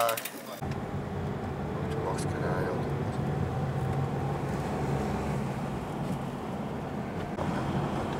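Steady low road and engine rumble of a car driving, heard from inside the cabin. A moment of speech is cut off about half a second in, and faint voices come through later.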